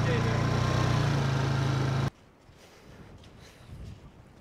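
A vehicle engine running steadily with a low drone, cutting off suddenly about halfway through and leaving only faint outdoor background.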